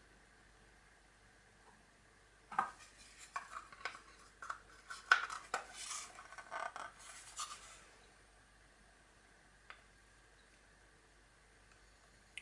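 Plastic casing of an Optex FX55 PIR motion detector being handled and its lid fitted back on: a run of small clicks, scrapes and rubs starting a couple of seconds in. A single faint click near the end is the detector's reed relay switching inside.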